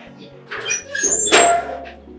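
A door being opened: the handle and latch clack and the hinges squeak, loudest about a second and a half in, over steady background music.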